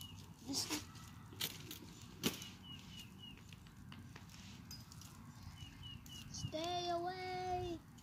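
Wood fire in an open fire pit giving a few sharp pops, with short high chirps repeated in quick runs in the background, like a bird. Near the end a voice holds one steady note for about a second.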